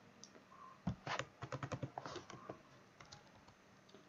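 Computer keyboard typing: a quiet run of short keystrokes from about one second in to about two and a half seconds in.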